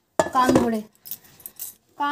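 A short stretch of a voice, then light metallic jingling and clinking of small metal objects.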